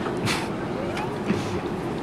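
Steady background hum of road traffic, with faint voices and two brief hissing swishes.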